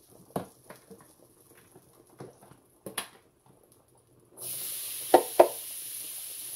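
A few light handling clicks, then about four seconds in diced onion and bell pepper drop into a hot oiled skillet and start sizzling steadily. Two sharp knocks come just after the sizzle starts.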